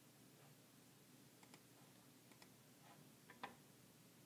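Near silence with a handful of faint computer mouse clicks, several in quick pairs, the loudest about three and a half seconds in.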